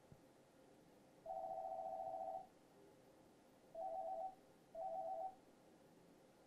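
Electronic telephone ringer trilling in a two-tone warble: one ring of about a second, then two short rings.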